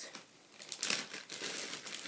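Packaging being handled and crinkling, a run of irregular rustles and crackles that starts about half a second in.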